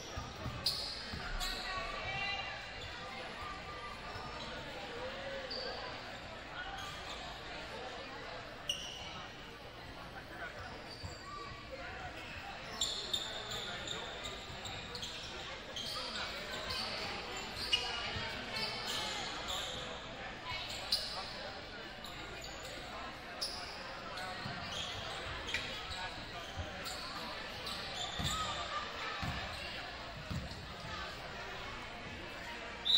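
Occasional basketball bounces and short high sneaker squeaks on a hardwood gym floor, over the steady chatter of a crowd, all echoing in a large gymnasium.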